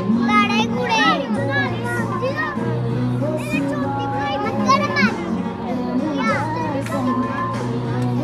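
Children's high-pitched voices calling and chattering throughout, over music playing in the background.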